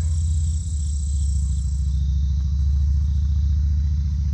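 A steady low mechanical rumble, with crickets trilling high above it until about two seconds in.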